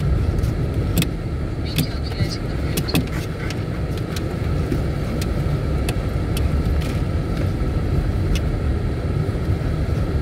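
Car running slowly over brick paving, heard from inside the cabin: a steady low tyre and road rumble with scattered sharp ticks and rattles.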